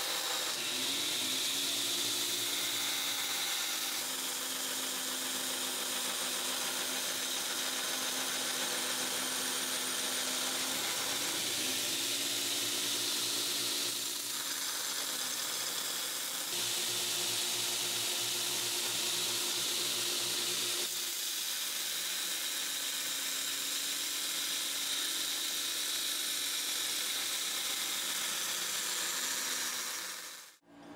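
Belt grinder running with a 5160 spring-steel blank pressed against the belt: a steady grinding hiss over the motor's hum. The hum dips and recovers a few times as the pressure on the blade changes.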